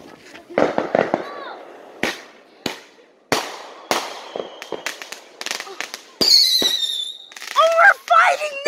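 Consumer aerial fireworks going off overhead: a series of sharp bangs and crackles. About six seconds in, a high whistle falls slightly in pitch for about a second.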